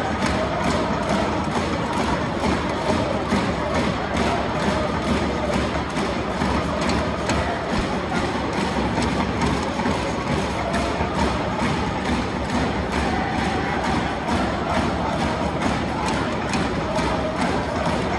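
Football supporters chanting in unison to a steady drum beat.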